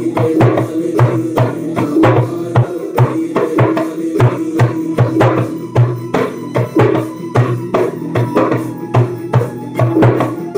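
Djembe played with bare hands in a steady, driving rhythm, mixing deep bass strokes with sharper, brighter slaps and tones.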